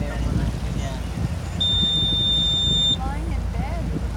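A motor boat's engine running with a steady low rumble as the boat moves in slowly. Partway through, a single high electronic beep holds steady for just over a second and then cuts off.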